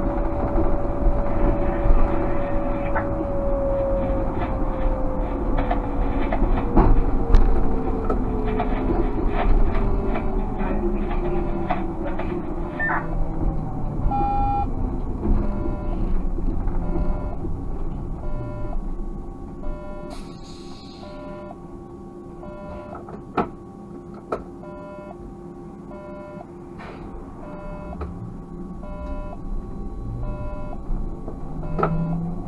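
Škoda 30Tr SOR trolleybus running, heard from the driver's cab, its electric drive whine sliding down in pitch over the first dozen seconds as it slows. From about halfway a cab electronic beep repeats about once a second.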